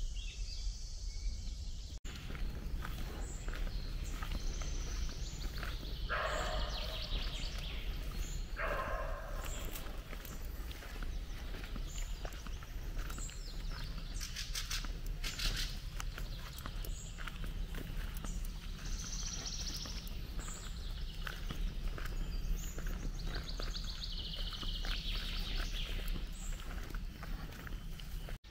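Woodland ambience: songbirds calling now and then, over a steady low rumble.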